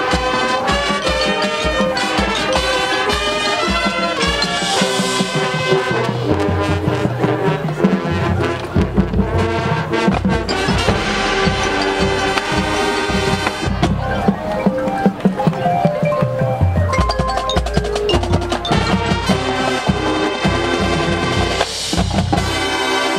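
High school marching band playing its field show music, with pitched band lines over a steady drum pulse.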